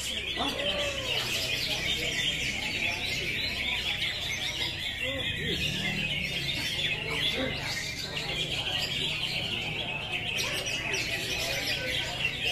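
A chorus of many caged green leafbirds (cucak hijau) singing at once: a dense, unbroken stream of fast, high chirps and trills, with a few lower sliding whistled notes rising out of it, and people talking underneath.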